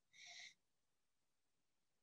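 Near silence in a pause of a video call, with one faint, brief tone-like sound in the first half second.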